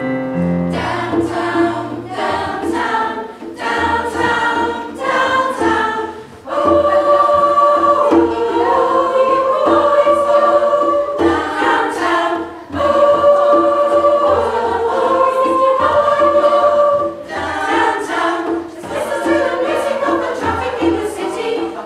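Women's choir singing in harmony over low bass notes: short, clipped phrases at first, then long held chords through the middle, then short phrases again near the end.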